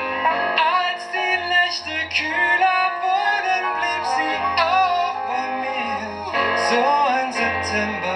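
Live band music: a male singer's melody with wavering held notes over piano chords and low bass notes.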